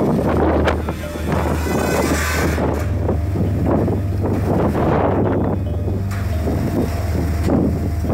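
Sandstorm wind buffeting the camera microphone, a loud, steady rushing noise, over a low droning music bed.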